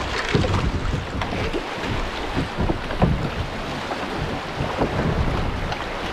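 Shallow river water rushing over rocks in riffles around a kayak. Wind buffets the microphone in irregular low thumps.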